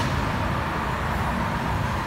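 Steady low background rumble of room noise with no distinct event in it.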